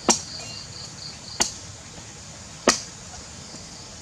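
Knife chopping into the husk of a green coconut: three sharp strikes about a second and a quarter apart. Insects chirr steadily throughout.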